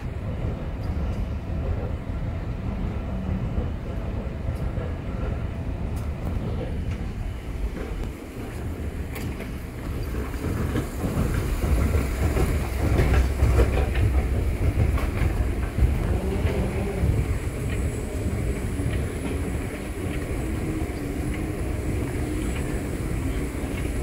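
Airport moving walkway running, a steady low rumble with a faint rattle of its treads. It grows louder for a few seconds around the middle.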